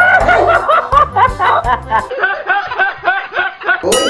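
A man laughing hard in quick repeated bursts, about four a second, trailing off near the end. Background music with a steady bass beat plays under it.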